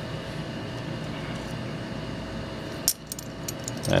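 Plated metal drawer pulls and backplates clinking together in the hands, a few short sharp clinks starting about three seconds in. Under them is a steady background hum.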